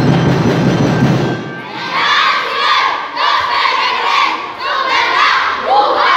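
Percussion music stops about a second and a half in, and a group of children shouts in unison: four shouts, each about a second long, one right after another.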